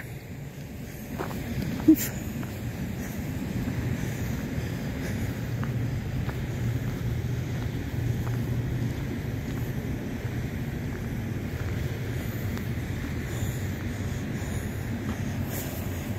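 A steady low rumble of outdoor background noise swells in over the first few seconds and then holds, broken by one short exclaimed "oof" about two seconds in.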